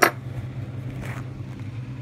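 A steady low hum, with a sharp click right at the start and a soft brief rustle about a second in, as a small metal tin holding a cast lead piece is handled.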